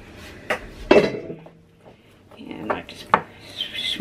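A spatula scraping and knocking against a glass bowl as thick cake batter is pushed down and spread, with a few sharp taps. The loudest knock comes about a second in and rings briefly.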